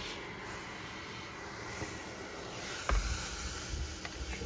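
Handheld steamer hissing steadily. About three seconds in there is a sharp knock, then low bumps as the comic book is handled.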